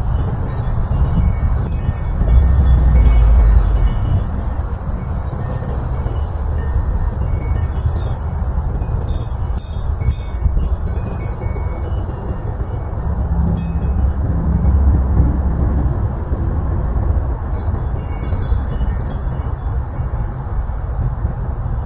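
Wind chimes tinkling irregularly in a breeze, in scattered clusters of light metallic strikes. Underneath is a louder low rumble of wind that swells twice, a couple of seconds in and again about two-thirds of the way through.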